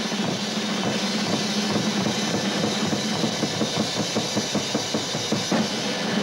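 Drum kits played fast together: a dense run of snare, tom and bass drum strokes under a constant wash of cymbals.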